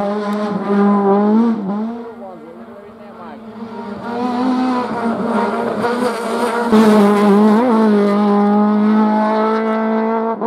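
Autobianchi A112 hillclimb car's four-cylinder engine running at high revs up the climb. Its note dips briefly in pitch a couple of times as the driver lifts or shifts, fades around two to four seconds in, and comes back loudest from about seven seconds in.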